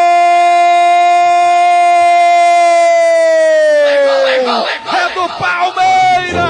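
Radio football announcer's long drawn-out goal cry, "Goooool", held on one steady high note for about four seconds. It then falls away in pitch and breaks into shorter shouting. The cry calls a penalty kick just converted.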